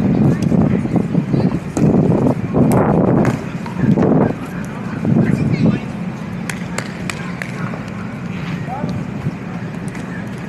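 Voices calling the score and talking, then pickleball paddles striking a plastic ball as a rally starts: a few sharp pops in the second half, under a second or so apart.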